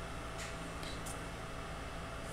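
Steady hum and whoosh of a small nail-wrap mini heater running, with a few faint soft ticks.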